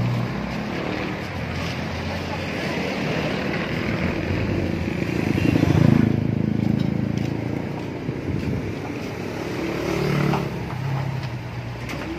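A motor vehicle's engine running, growing louder to about six seconds in and then easing off, under indistinct voices.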